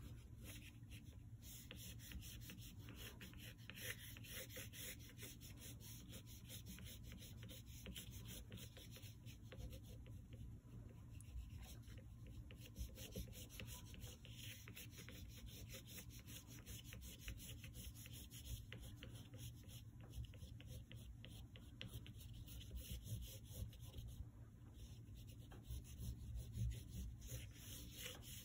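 Black oil pastel stick rubbing and scratching across drawing paper in a faint, continuous run of short strokes.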